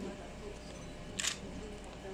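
A single short, sharp, hissing click about a second in, over a low steady room hum.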